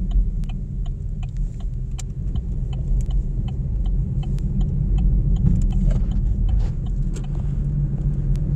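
A steady low rumble with a light, regular ticking over it, about two ticks a second.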